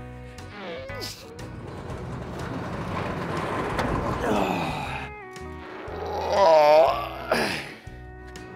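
Steel foam-pit roof being pushed back by hand on its bearings, a noisy rumble that grows over several seconds, then a man's loud strained groan from the effort near the end. Background music plays throughout.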